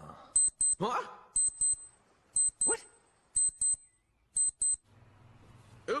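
Electronic alarm beeping in high-pitched double beeps, one pair about every second, five pairs in all, stopping a little before the end.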